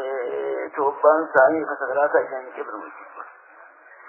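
A man speaking on a muffled recording with no treble.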